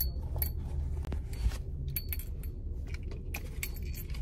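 A bunch of keys on a keyring jangling in the hand, a string of short, irregular metallic chinks and clinks.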